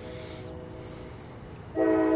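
Night insects keep up a steady high-pitched drone over a faint chord of low, steady horn-like tones. Near the end the chord suddenly sounds much louder, like a horn blast.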